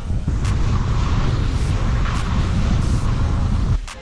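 Wind buffeting a camera microphone during a ski descent: a loud, steady rumble with a hiss over it, cutting off suddenly near the end.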